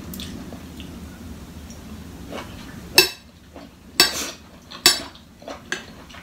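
A metal fork clinking and scraping against a plate of salad as food is picked up: three sharp clinks about a second apart in the second half, then lighter taps.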